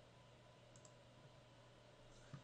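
Near silence with faint room hum, and two faint computer mouse clicks in quick succession a little before the middle.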